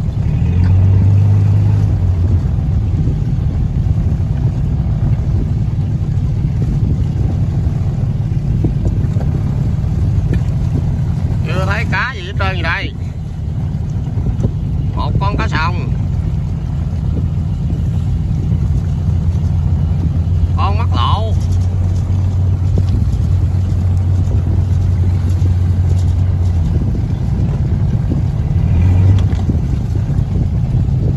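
Small fishing boat's engine running steadily, with water washing along the hull. Voices call out briefly three times, about twelve, fifteen and twenty-one seconds in.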